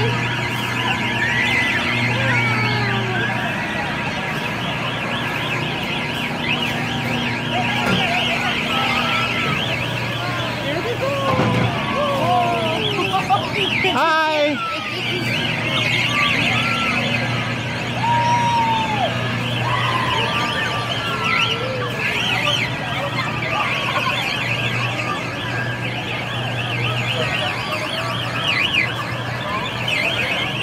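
Busy amusement-park din around a turning children's airplane ride: a steady low hum that drops out now and then, children's voices rising and falling, and a fast high warbling throughout.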